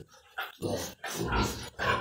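Pigs grunting: several short grunts after a moment's quiet.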